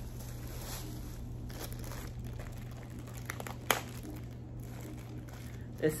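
Plastic packaging crinkling faintly as it is handled and opened, with one sharp click a little past halfway.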